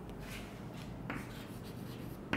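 Chalk scratching on a green chalkboard as words are written by hand, in a few short strokes.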